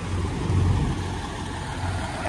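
Diesel engines of parked semi-trucks idling: a low, steady hum that swells slightly about half a second in.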